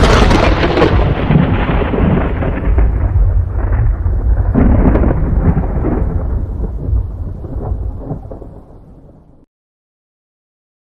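Thunder sound effect: a sudden loud crack that rolls on as a deep, uneven rumble, fading away over about nine seconds before cutting off abruptly near the end.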